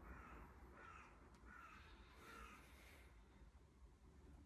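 Four faint bird calls in quick succession, each about half a second long.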